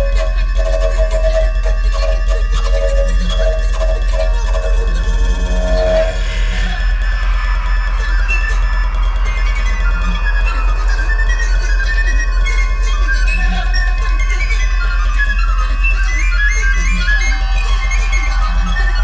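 Contemporary recorder music with electronics over a steady low drone. For the first six seconds a square wooden bass recorder plays pulsing mid-pitched notes. Then rapid runs of short high notes on a small recorder take over.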